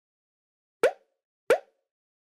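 Two short cartoon 'pop' sound effects about two-thirds of a second apart, each a quick rising blip.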